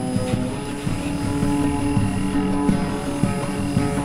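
Experimental music: an oud plucked low and irregularly over a sustained, droning bed of held pitches. Shortwave radio noise and thin steady whistling tones sit high above it.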